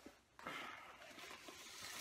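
Faint rustling as a padded nylon gig bag and the white packing wrap inside it are handled and pulled out, with a few soft ticks.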